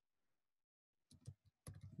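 Faint computer keyboard keystrokes: about a second of near silence, then a few short taps in the second half.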